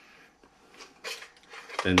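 A quiet pause with a few faint taps and rubs from a digital trigger pull gauge being handled over a pistol, one small tap about a second in, then a man's voice resumes near the end.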